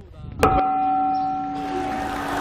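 A single bell struck once about half a second in, then ringing on with a steady, slowly fading tone of several pitches.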